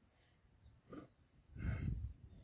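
A lion giving a short, low growl near the end, after a briefer grunt about a second in.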